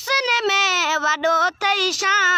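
A boy singing a Sindhi devotional song in praise of the Hafiz of the Quran, solo with no accompaniment. He holds long, gliding notes, with a brief breath about one and a half seconds in.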